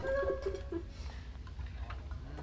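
Brief soft laughter, a quick run of four or five short chuckles in the first second, over a low steady hum.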